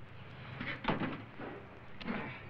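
A few soft knocks and rustles, the strongest about a second in, as an electric garden tool is lowered to the ground, over a steady low hum.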